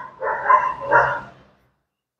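A dog barking several times in quick succession, stopping about a second and a half in.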